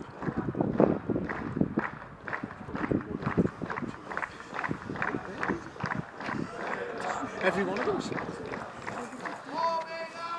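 Indistinct voices of a group of people talking over one another, with no single clear speaker. Near the end one voice holds a long drawn-out call.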